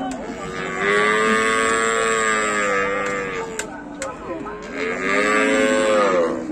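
A cow mooing twice: a long call of about three seconds, then a second long call starting near the end.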